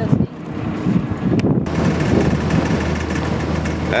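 A sailboat's rebuilt inboard diesel engine running steadily under way, a low even hum, with wind buffeting the microphone.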